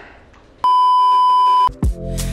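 A loud, steady one-note censor bleep lasting about a second, dubbed over the reaction. Just after it, near the end, music with a deep bass starts.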